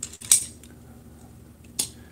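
A few sharp clicks and taps of hard 3D-printed plastic knife mock-ups being handled and set down on a tabletop among other knives: one just after the start and another near the end.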